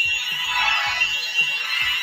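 Two ArtSaber lightsaber hilts playing their built-in electronic hum sound effect, a steady buzzing tone, after the double-bladed saber has been detached into two.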